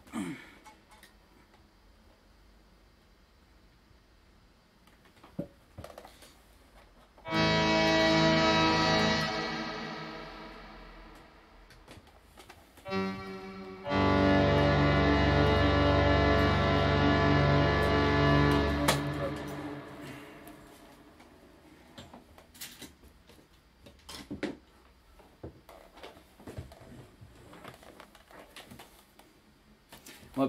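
Small keyboard synthesizer playing long held notes. The first comes in about seven seconds in and fades over a few seconds; a brief one follows, then a louder, deeper one that holds for about five seconds before fading out. Between the notes it is quiet apart from a few soft clicks.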